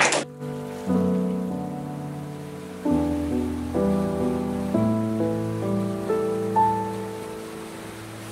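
Slow, soft piano music: sustained chords that change about once a second and fade between changes.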